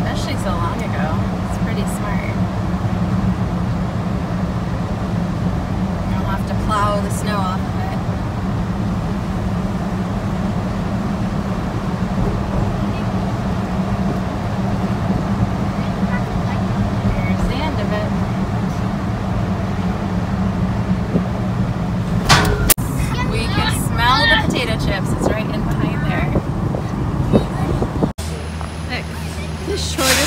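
Inside a moving car's cabin: the steady rumble of the engine and tyres on the road, with voices talking now and then. The rumble stops abruptly near the end, giving way to a different, quieter steady background.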